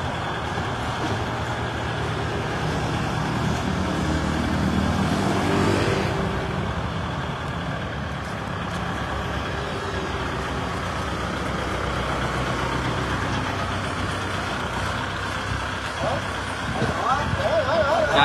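Kubota L5018SP tractor's diesel engine running steadily under load as the tractor climbs steel ramps onto a flatbed truck, briefly louder about five seconds in.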